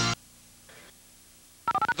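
Rock music from a TV break bumper cuts off abruptly just after the start. About a second and a half of very quiet dead air with faint hiss follows, and then a man's voice begins near the end.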